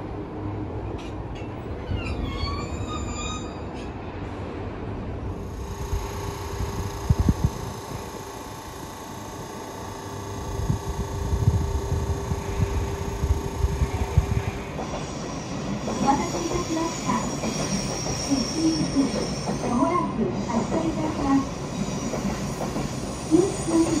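JR East E127-series electric train at a station platform: a brief wheel squeal about two seconds in, then a steady hum with hiss that stops suddenly about halfway through.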